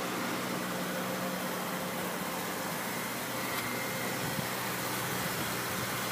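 A steady low mechanical hum under an even hiss, with no sharp knocks or changes.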